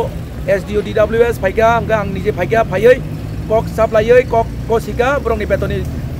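A man speaking in a language other than English, over a steady low rumble of vehicles.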